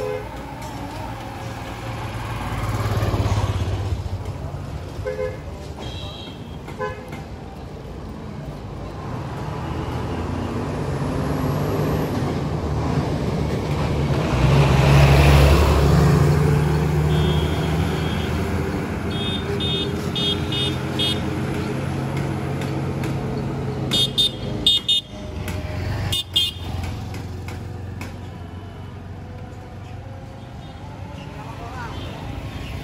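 Road traffic passing on an open road: engine rumble swells to its loudest about halfway through as a vehicle goes by. Vehicle horns toot in short beeps, several in quick succession in the second half.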